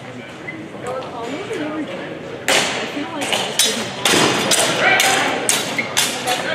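A rapid flurry of longsword strikes: about eight sharp clacks and thuds of blades hitting each other and the fencers' protective gear, starting about two and a half seconds in, echoing in a large hall.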